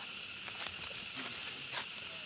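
Steady outdoor background hiss with a few faint, short clicks, one a little past the middle and one near the end.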